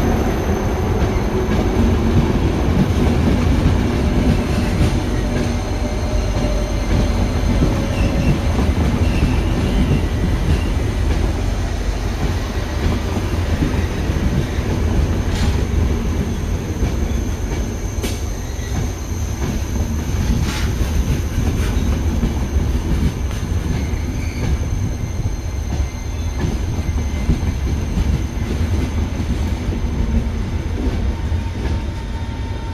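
Passenger coaches of a Thello train rolling past on the station track: a steady deep rumble of wheels on rail, with a thin high steady whine above it. A few sharp clicks come in the middle of the pass.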